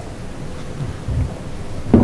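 Low rumbling noise with a few soft thumps about a second in, over steady room hiss, typical of handling noise picked up by a desk microphone.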